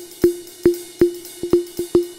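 Percussive sound-effect track: short knocks, all at one pitch, each with a brief ring. They come at a slow, even pulse, then quicken to about six a second near the end.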